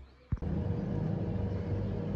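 A short click about a third of a second in, then steady background rumble with a faint, even hum underneath.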